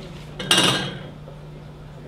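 A single short clatter of tea things handled on a tea table, about half a second in.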